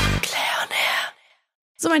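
A burst of hissing, breathy noise lasting about a second, the tail of a sound effect laid over the edit, ending abruptly; a short dead silence follows.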